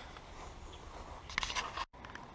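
Faint rubbing and scraping of a handheld camera being moved around, with a few sharp clicks and rubs near the end, then a brief drop to silence.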